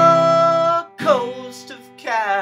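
Acoustic guitar strummed under a man's singing voice, which holds one long note through most of the first second before the next strum.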